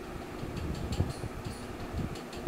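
Low steady background noise with a few faint clicks, one of them about a second in.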